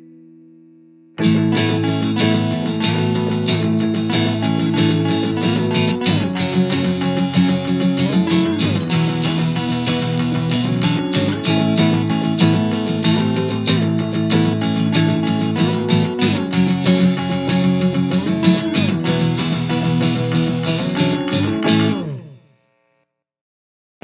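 Band music with no vocals: strummed guitars and bass playing a dense instrumental passage. It comes in about a second in after a fading note, stops near the end, and leaves a short silence.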